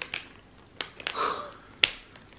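A few short, sharp clicks and a brief soft rustle of cardboard packaging as a mystery ornament box is opened by hand.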